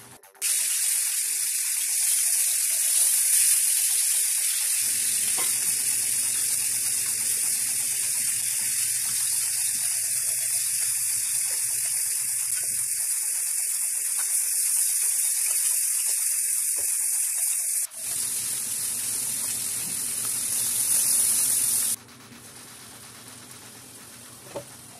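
Crab curry sizzling steadily in a frying pan as a loud, even hiss. It cuts in sharply at the start, breaks off for a moment about three-quarters of the way through, then stops abruptly shortly before the end.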